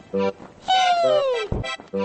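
Cartoon soundtrack: a couple of short accordion-like notes, then one long falling tone, slipping steadily down in pitch for nearly a second and ending in a low thud, before the notes start again.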